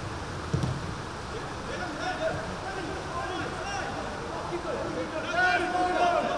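Pitch-side sound of a youth football match: players' and spectators' shouts over a steady background hum, with a short low thud about half a second in. The shouts grow louder near the end.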